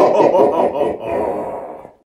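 A person's voice laughing, muffled, with little above the low and middle range, fading out near the end.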